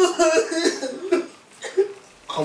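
A woman sobbing in short, broken bursts, quieter in the second half with one last short sob near the end.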